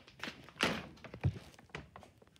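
Handling noise: a few knocks and a dull thud, the loudest a little over a second in, with lighter clicks near the end.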